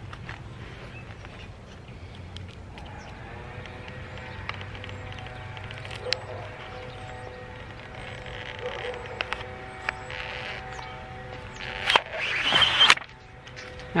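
Small handling clicks on a Polaroid Land Camera, then about twelve seconds in a loud paper rasp lasting about a second as the black paper cover sheet of the pack film is pulled out of the camera, starting to tear. Faint music with held notes runs underneath through the middle.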